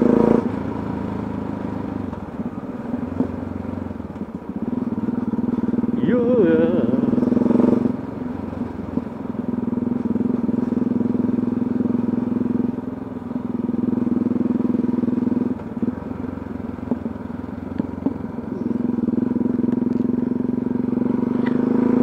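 Motorcycle engine running at town speed, heard from the rider's seat. Its steady note swells and eases several times as the throttle is opened and closed.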